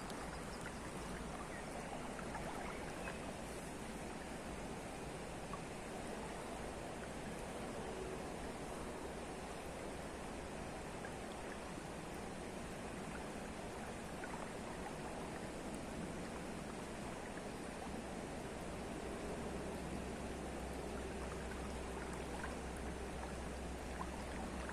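Shallow river water running over a stony riffle: a steady, even rush of flowing water.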